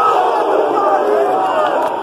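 Large crowd of football supporters in a stadium singing and shouting together, many voices at once, loud.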